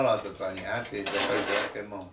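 Dishes and cutlery clattering, loudest in the second half.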